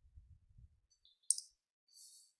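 A single sharp click about a second in, after a faint low rumble.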